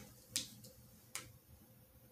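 Tarot cards being handled on a table: a few faint, sharp clicks, the two clearest about a second apart.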